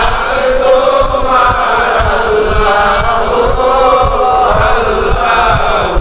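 Voices chanting a devotional zikr of the names of Allah, a wavering melodic chant of several overlapping voices, with irregular low knocks underneath.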